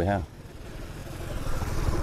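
A road vehicle's engine noise growing steadily louder as it approaches, after a brief spoken syllable at the start.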